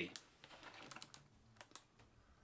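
A handful of faint, sharp plastic clicks, spaced irregularly, from small plastic objects being handled at a desk.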